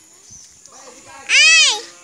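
A young girl's high-pitched call: one drawn-out cry, a little past halfway through, that rises and then falls in pitch.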